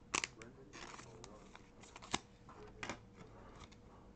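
Trading card being handled: a faint rustle of card and plastic with several sharp clicks, the clearest about two seconds in.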